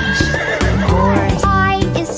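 A horse whinny that rises, wavers and falls away within about the first second, over children's background music.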